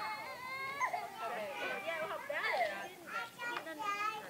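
Toddlers' high-pitched voices: drawn-out whining, crying sounds that glide up and down, with a few short clicks near the end.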